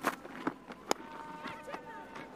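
Cricket bat striking the ball: a single sharp crack about a second in, over faint ground ambience.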